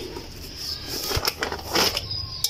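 Rustling and handling noise, with a soft knock about a second in followed by a short run of scraping, rustling sounds.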